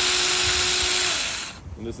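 Tomyvic 6-inch battery-powered mini chainsaw running free with no load, a steady whine over a loud hiss of the moving chain, then falling in pitch and dying away about a second and a half in as the motor winds down.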